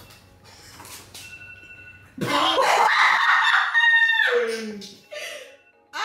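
A person's loud, shrill excited shout about two seconds in, lasting about two seconds and dropping in pitch as it ends, followed by a briefer, lower vocal sound.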